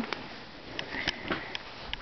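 Five-week-old baby's faint snuffling breaths with a few small mouth clicks, close to the microphone.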